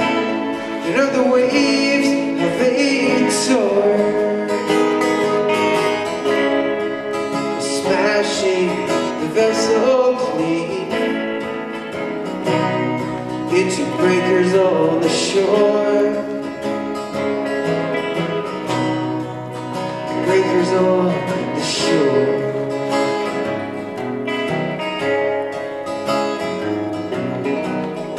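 Live country-style guitar music: a steel-string acoustic guitar strummed steadily together with an electric guitar playing a lead line whose notes bend in pitch.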